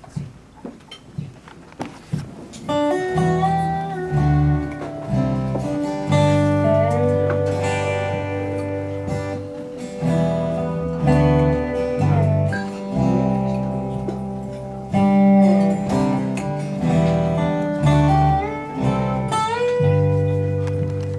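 Instrumental intro of an acoustic folk song: acoustic guitar strumming with a dobro, a resonator guitar played lap-style with a slide, playing gliding melody lines over it. The band comes in about three seconds in, after a few quiet plucks.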